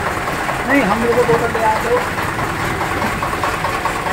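Single-cylinder stationary diesel engine with heavy flywheels running steadily with a rapid, even beat, powering an oil expeller press.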